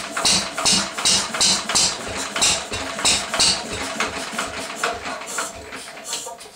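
1937 Lister D single-cylinder stationary engine running roughly with a sharp exhaust beat about three times a second, the beats weakening toward the end. It is running poorly after many years unused, which the owner suspects may be a timing fault.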